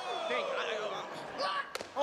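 A single sharp whack near the end as a metal baseball bat strikes a wrestler across the body, over voices shouting.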